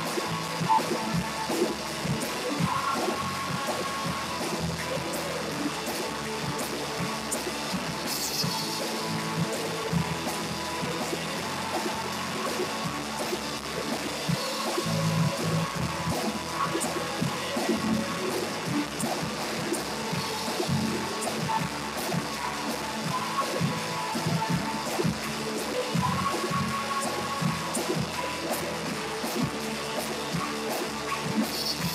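Live worship band music played through a PA: drum kit keeping a steady beat with voices singing over it, in a dense, slightly muddy live recording.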